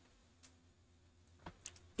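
Near silence with a few faint clicks: one about half a second in and a small cluster of three shortly before the end, from handling the desk equipment.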